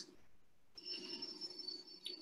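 A faint, steady, high electronic tone, starting a little under a second in and holding for just over a second, with a weaker low hum beneath it.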